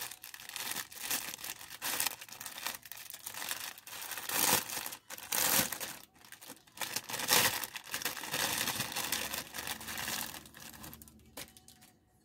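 Clear plastic poly bag crinkling and rustling in irregular bursts as it is opened and a cloth onesie is pulled out of it, loudest in the middle and dying away near the end.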